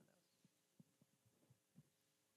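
Near silence: faint room tone with a low steady hum and a few very faint short thumps.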